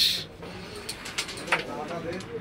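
Carrom striker flicked across a wooden carrom board, with a few light clicks and one sharper click about one and a half seconds in as it strikes the carrom men. Faint low voices murmur under it.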